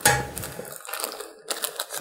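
Plastic bags of small parts crinkling and rustling as they are handled and pulled from a cardboard box. There is a loud rustle at the start, then a run of quieter crackles.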